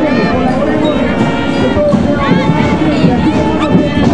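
A loud, steady mix of many voices and music, with no words clear.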